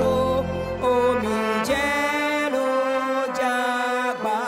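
Live band music: a woman's voice singing long held notes, accompanied by trumpet and bowed violins.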